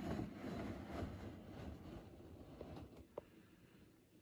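Faint low rumbling background noise that dies away toward the end, with a few soft clicks.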